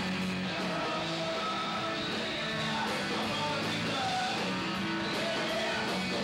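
Live rock trio playing mid-song: electric guitar, bass and drums, with a steady beat running under the guitar.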